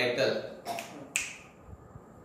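A man's voice trailing off in the first half second, then a single sharp click a little over a second in.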